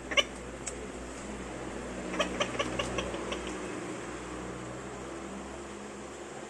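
Hard rubber dog-toy ball with a built-in noise-maker, handled in the hand. There is a sharp click just after the start, then a quick run of about eight short chirps around two to three seconds in.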